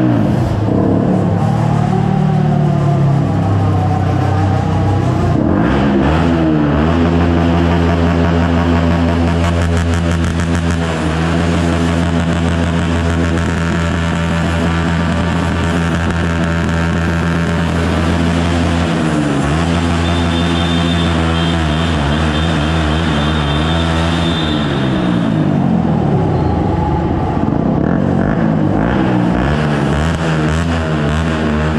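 Small-displacement supermoto motorcycle engines revving inside an underground car park, the pitch rising and falling with the throttle and held at steady high revs for long stretches, dropping briefly about two-thirds through and again near the end.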